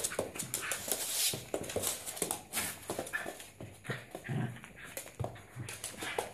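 A dog making short vocal sounds and breathing, amid a run of quick scuffs and knocks, busier in the first half.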